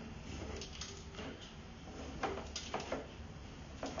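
Faint scattered clicks and scrapes over a steady low hum, as a sewer inspection camera's push cable is pulled back through the drain line.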